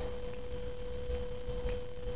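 A steady single tone at one unchanging pitch, over a faint low background rumble.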